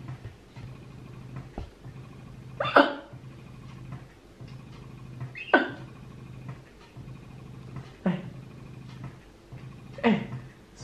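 Spectra electric breast pump running: a steady low motor hum, broken three times by a short falling squeal, about two and a half seconds apart.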